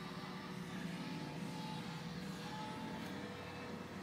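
Electric centrifugal pool-style pump running with no load, a steady hum, powered through a 750-watt inverter.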